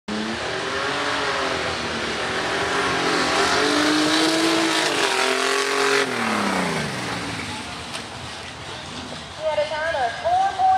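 Mud bog truck engine revving hard through the pit, its pitch rising and falling in surges, then dropping away after about six seconds as the truck passes and lets off.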